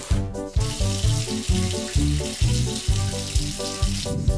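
Bouncy children's cartoon music with a steady bass beat. About half a second in, a steady hiss of running tap water joins it and lasts until a scene change at the end.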